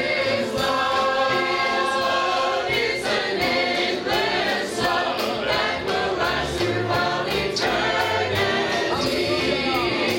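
Church choir singing a gospel song, many voices together in steady, sustained lines.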